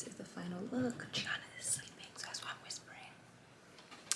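A woman's voice speaking quietly, close to a whisper, for about three seconds, then a short pause.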